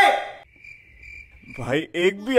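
A man's voice cuts off, then a cricket chirping in the silence, one steady high thin trill, the stock 'awkward silence' sound effect. Near the end a short rising whoosh leads into the next scene.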